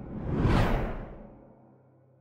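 A whoosh sound effect for a logo reveal, swelling to a peak about half a second in and fading away over the next second, over a faint low held tone.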